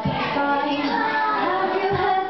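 A young female singer singing a pop song into a handheld microphone over a backing track, amplified through a PA.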